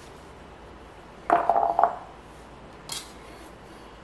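Metal kitchen utensils clattering: a brief loud rattle with a short metallic ring a little over a second in, then a single light click about a second later.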